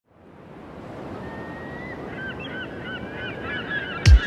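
A rushing, surf-like haze fading in, joined about two seconds in by a quick run of short, repeated honking bird-like calls.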